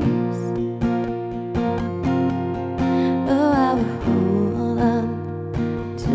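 Small-bodied acoustic guitar strummed in a steady rhythm through a chord pattern, an instrumental passage with no sung words.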